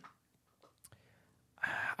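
Near silence in a pause between speech, with a faint tick a little under a second in, then a short breath near the end just before the man at the microphone speaks again.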